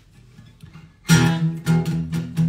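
Acoustic guitar, quiet at first, then strumming starts about a second in with a steady rhythm of several strums a second.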